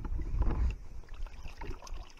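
Water sloshing in a plastic bucket and splashing out into shallow pond water as live fish are tipped back in, heaviest in the first second.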